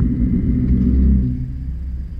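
Off-road 4x4's engine pulling under load on a dirt trail climb, heard from the cab, then easing off just over a second in.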